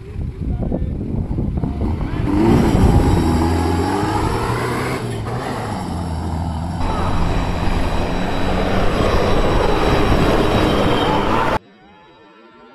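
Lifted off-road Mitsubishi Pajero's engine revving hard and pulling under load as it accelerates up a loose dirt slope, the note climbing about two seconds in and holding high; the sound cuts off suddenly near the end.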